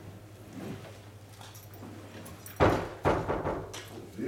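Two sudden loud rustling bursts close to the microphone, about half a second apart, over quiet room noise.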